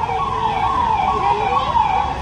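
A siren wailing, one continuous high tone that wavers up and down in pitch.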